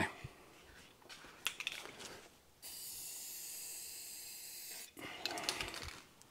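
Aerosol spray varnish hissing from the can in one steady burst of about two seconds midway through, laying a quick sealing coat. Light rustles and taps come before and after the burst.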